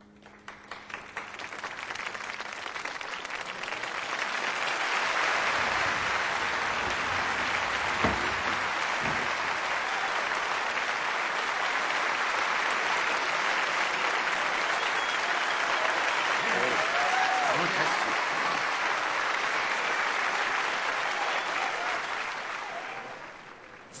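Audience applauding in a hall. The clapping swells over the first few seconds, holds steady with a few voices calling out in it, and dies away shortly before the end.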